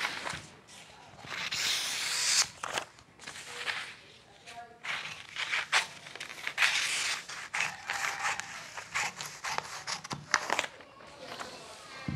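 Scissors cutting through a kraft-paper sewing pattern in several bursts of snipping, with the stiff paper rustling as the sheet is lifted and turned.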